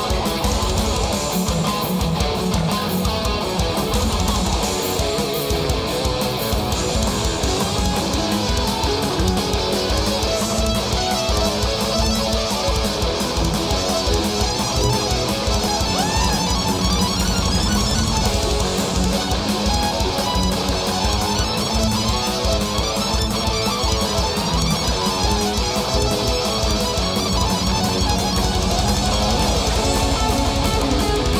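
Power metal band playing live in an instrumental passage: electric guitars, bass guitar and a drum kit, with pre-recorded keyboard tracks, continuous and loud.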